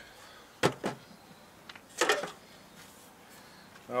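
Aluminium-framed seat box drawer section being handled: a sharp knock a little over half a second in, then a short scrape about two seconds in.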